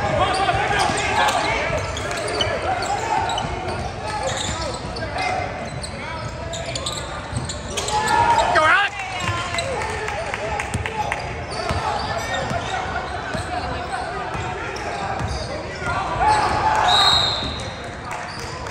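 Basketball dribbling and bouncing on a hardwood gym court during a game, among the voices of players and spectators, with louder shouts about halfway through and near the end.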